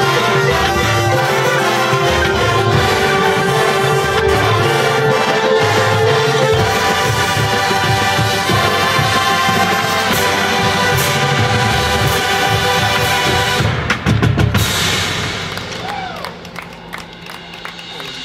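Drum and bugle corps playing loud, sustained music: a brass horn line with deep marching tubas, marching drums and mallet percussion. A run of sharp hits comes about fourteen seconds in, and then the music falls much quieter.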